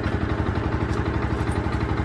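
Yamaha sport motorcycle's engine idling with a steady, even pulse.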